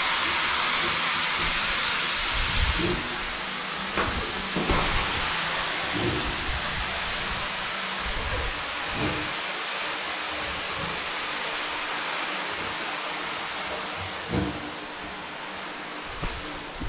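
Shower water running steadily, hissing on a tiled bathroom floor. It is louder for the first three seconds, then settles lower, with a few soft knocks.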